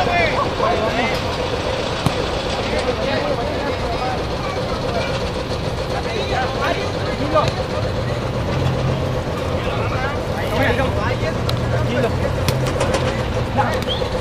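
Outdoor ambience at an amateur football match: faint shouts of players over steady background noise. A deeper low rumble, like a passing vehicle, comes in about eight seconds in and fades after about four seconds, with a few faint knocks along the way.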